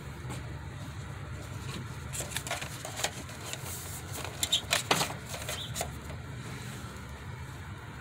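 A paper envelope rustling and a few light clicks and taps of a thin sheet-metal mailbox as the envelope is slid into it, over a steady low rumble.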